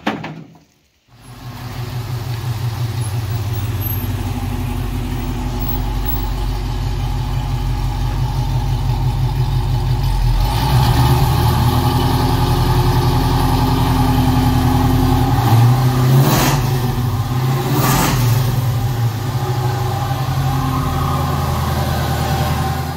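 1969 Camaro's LS3 V8 running steadily, on a startup tune that has never been dialed in. The note gets fuller and shifts about halfway through, with two short sharp sounds near the end.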